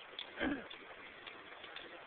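Guardsmen's boots striking the pavement as they march, faint regular steps about two a second. A brief louder sound falls in pitch about half a second in.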